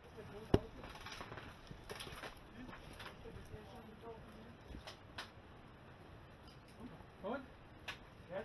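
A single sharp shot from a Silverback Tac41 bolt-action spring airsoft sniper rifle about half a second in, followed by a few fainter clicks. Faint voices are heard near the end.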